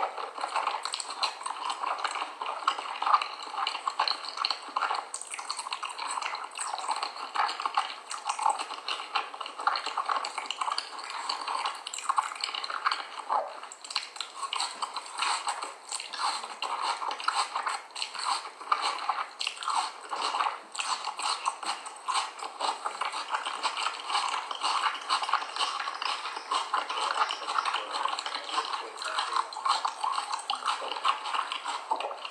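Close-up mouth sounds of raw cornstarch being eaten off a spoon: a continuous run of small crunching, squishing clicks as the powder is chewed.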